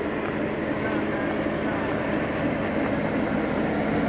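Jeep Wrangler's engine running steadily at low revs, a low, even hum with no rise or fall.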